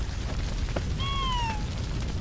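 A single short cat meow about a second in, its pitch falling slightly as it ends, over steady background noise.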